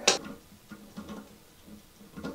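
Faint handling of plumbing parts: a sharp click just after the start, then a few light taps and rustles as a braided steel supply hose is brought up to a plastic toilet-tank T-adapter.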